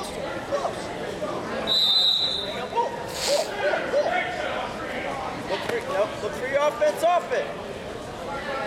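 Coaches and spectators shouting indistinct words across a gymnasium during a wrestling bout, with a brief high-pitched tone about two seconds in.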